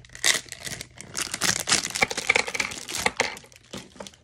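Plastic packaging crinkling and tearing as a pack of perm rods is opened by hand, a busy, irregular crackle with a sharp loud crackle just after the start.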